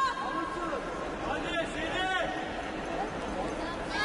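Crowd murmur in an indoor sports arena, with a couple of short shouted calls around the middle.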